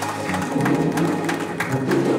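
Live gospel music from a church praise band: keyboard and guitar with regular drum hits.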